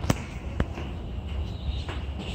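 Footsteps going down concrete stairs: a few sharp steps, the loudest right at the start, over a steady low rumble.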